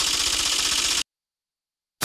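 Rapid, even clicking sound effect like fast typing, accompanying on-screen text being typed out; it cuts off suddenly about a second in, leaving silence.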